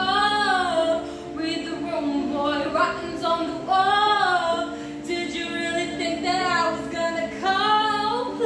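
A young woman singing a pop song in long phrases whose pitch rises and falls, over steady held low notes.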